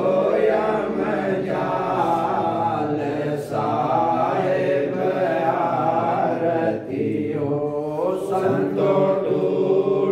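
Voices chanting a devotional aarti in a steady, continuous sung chant.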